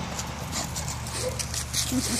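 Footsteps crunching over gravel and dry fallen leaves as a dog is walked on a leash, with a brief faint dog whimper about a second in.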